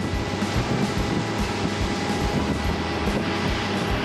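Bay boat running under way across open water: a steady engine drone mixed with rushing wind and water noise.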